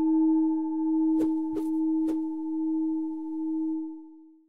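A logo-sting sound effect: one sustained low ringing tone like a struck singing bowl, wavering slowly in loudness. Three light ticks come between about one and two seconds in, and the tone fades out near the end.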